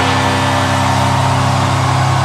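Symphonic death metal played live by band and orchestra, holding one steady, sustained chord with no drum hits.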